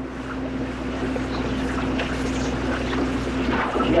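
Steady low hum and hiss of an old lecture-hall recording, growing a little louder, with no clear event in it.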